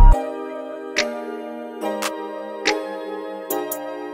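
Pluggnb-style hip-hop instrumental beat dropping into a breakdown: the 808 bass and drums cut out at the start, leaving sustained chords that change about every second and a half, with sparse sharp clicking ticks.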